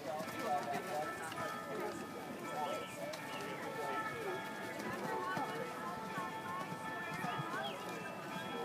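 Indistinct chatter of several voices, with a cantering horse's hoofbeats on soft arena footing and a few steady held tones behind them.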